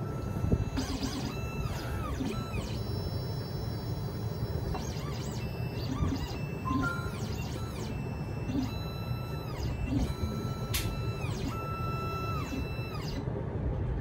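Xhorse Dolphin XP-005L key cutting machine's stepper motors whining through several short moves of the carriage and probe, each rising in pitch as it starts and falling as it stops, with one sharp click a little past the middle. The machine is running its automatic clamp calibration on side B of the M5 clamp.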